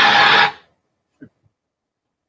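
A loud, dense soundtrack from a promo video cuts off suddenly about half a second in, leaving dead silence broken only by one faint, short blip.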